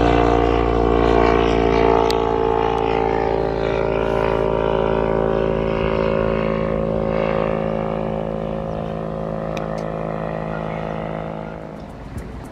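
Light propeller aircraft flying low overhead, its engine drone steady and even, growing gradually fainter as it moves away.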